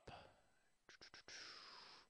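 Near silence: faint room tone with three quick, faint clicks about a second in, then a soft breathy hiss.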